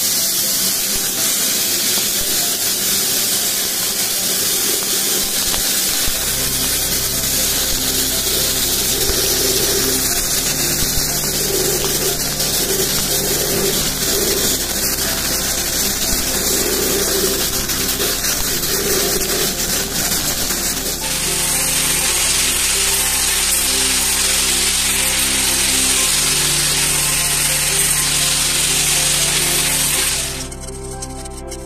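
Sandblaster nozzle blasting abrasive against a cast iron cauldron inside a blast cabinet: a loud, continuous hiss, stripping the old finish down to bare metal. Music plays underneath.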